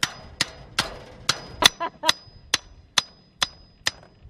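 Hammer repeatedly striking the top of a steel fence post, driving it into the ground, a little over two blows a second. Each blow is a sharp metallic clang with a short high ring.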